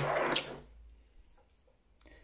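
Cylindrical 18650 lithium-ion cells being pushed together and set down on a tabletop: a short scraping rustle with a click in the first half-second, then a few faint light taps.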